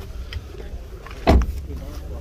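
A 2014 Chevrolet Cobalt's car door shut once with a single heavy thud, about a second and a half in.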